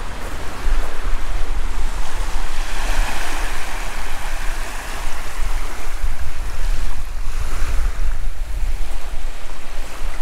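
Wind buffeting the microphone, heard as a low rumble, over small waves lapping and washing against the stony loch shore. The rushing swells a few seconds in and again near the end.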